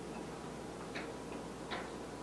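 Two short ticks of a marker pen writing on a whiteboard, about a second in and again near the end, over a steady hiss.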